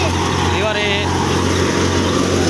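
Belt-driven wheat thresher running steadily, a continuous low drone. A voice is heard faintly for a moment about half a second in.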